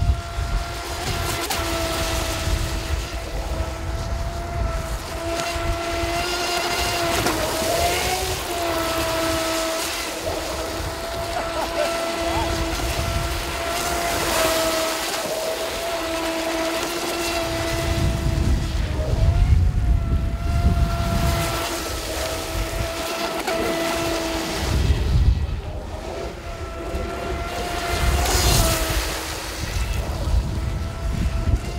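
AquaCraft Revolt 30 RC boat's water-cooled 1800kV brushless motor and propeller whining steadily at speed on a 4S LiPo, the pitch briefly dipping and rising about three times as the throttle changes. A low rumble comes and goes underneath.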